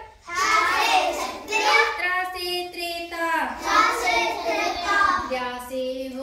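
Children singing a Hindi alphabet (varnamala) song, one sung line after another, with a brief break just after the start.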